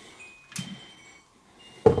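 A crystal lifted off an LED light, with a faint glassy ting and a soft knock, then one sharp, loud knock near the end as it is set down on a wooden desk.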